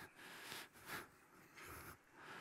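Near silence: quiet hall room tone with a few faint, brief soft noises.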